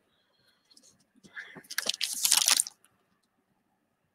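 Wax-paper trading card pack wrapper crinkling as it is handled, a burst of crackly rustle about a second and a half long in the middle after a near-silent start.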